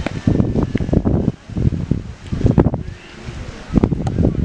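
Wind buffeting the microphone in irregular gusts. Near the end there is a single thump as a football is kicked in a penalty.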